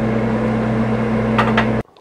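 Steady electrical hum with a fan's hiss from a powered-up Lincoln TIG 200 welding machine, holding a few fixed low tones, which cuts off suddenly near the end.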